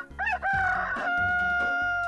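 Rooster crowing cock-a-doodle-doo: a few short rising notes, then one long held note.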